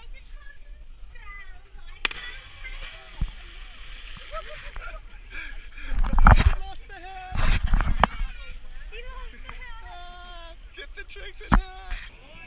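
Splashes of people plunging into deep water, with two big, loud splashes about six and seven and a half seconds in, amid voices shouting and calling.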